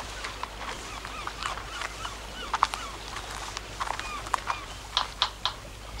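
Gulls calling, a scatter of short squawks and cries, some in quick clusters, over a faint steady low hum.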